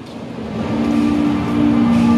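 Music coming in loud over the arena's sound system, growing louder, with sustained low notes that enter about half a second in and hold, over a wash of noise.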